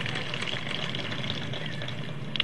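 Steady background noise with no words: a low hum under an even hiss, with faint scattered crackles.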